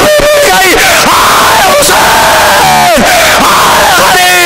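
A man's voice lamenting in long, loud, falling cries into a microphone and PA system, mixed with a crowd of mourners crying out.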